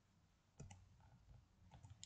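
Near silence: faint room tone with a few soft clicks, the first about half a second in and more near the end.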